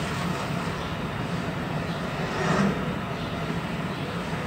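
Steady low hum with a background hiss, swelling faintly about two and a half seconds in.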